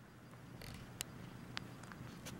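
Quiet, faint rustling of a bedspread with a few light clicks as the camera and cat move against the fabric.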